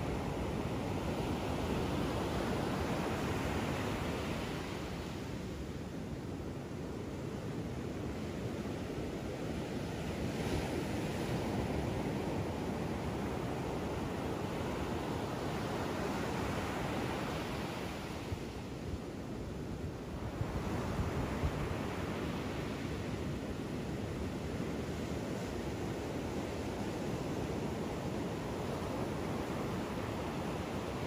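Ocean surf breaking on a sandy beach: a steady rush that swells and ebbs with the waves, easing off twice.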